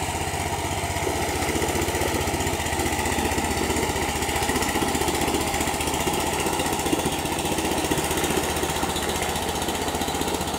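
Small petrol engine of a long-tail river boat, driving its propeller on a long shaft, running steadily at cruising speed with an even, rapid firing beat.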